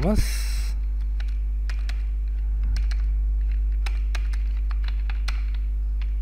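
Computer keyboard keystrokes as code is typed, coming as irregular single clicks and short runs. Under them runs a steady low electrical hum.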